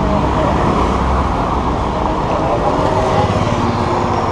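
Steady city road traffic with a loud low rumble, heard from an electric scooter moving along a bike lane.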